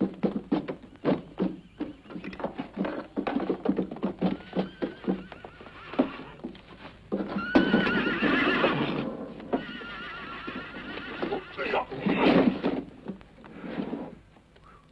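Horse hooves clopping in a quick, uneven run, then a horse neighing: a long, wavering whinny about halfway through.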